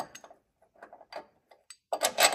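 A few faint, separate metallic clicks and taps from a bolt and a perforated steel bracket being handled and fitted against a bumper.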